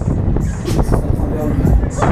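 Riding in a spinning Huss Break Dance fairground ride: a loud, dense mix of the ride's music and voices over a heavy low rumble of the ride in motion.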